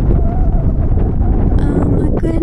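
Wind buffeting a phone's microphone: a loud, uneven low rumble with no distinct events.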